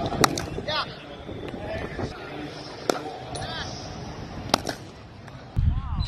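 A cricket bat striking a ball three times, sharp cracks about one and a half seconds apart, with voices in the background.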